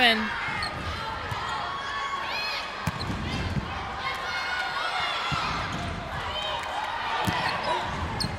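Volleyball rally on a hardwood gym court: sneakers squeaking in short bursts and the ball struck sharply a few times, about three, five and seven seconds in, over background voices from players and crowd.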